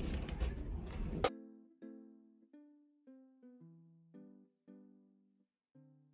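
A hair dryer's rush of air cuts off abruptly about a second in, giving way to soft plucked-string background music: single notes, a few a second, each ringing out and fading.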